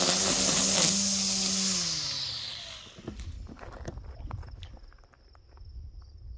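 A motor engine passing by: a steady engine tone with hiss that swells, then fades and drops in pitch over about three seconds. Afterwards a faint high steady insect trill and a few light clicks.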